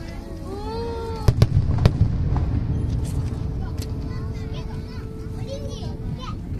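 Aerial firework shells bursting: a cluster of sharp booms about a second and a half in, followed by a low rumble that fades over the next few seconds.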